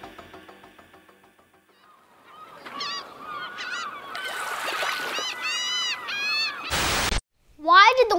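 Gulls calling, a run of short rising-and-falling cries, over the steady wash of surf. Just before the end there is a short, loud burst of noise.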